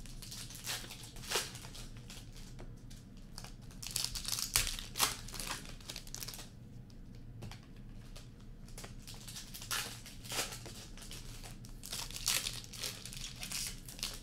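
Upper Deck hockey cards and their pack wrappers being handled: irregular crinkling and tearing with small clicks as cards are slid and flipped through. The rustling is busiest about four to five seconds in and again around twelve seconds in.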